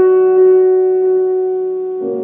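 Grand piano notes held and ringing, slowly fading away.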